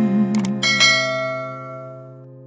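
A held sung note with vibrato ends about half a second in, after two quick clicks. A bright notification-bell ding follows, from the subscribe-button sound effect, and rings out over the next second or so above the song's fading last chord.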